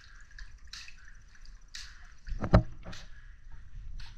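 Water dripping off a soaked sneaker and splashing into a filled bathtub, in small splats about once a second in a tiled room. About two and a half seconds in there is one much louder, low thump.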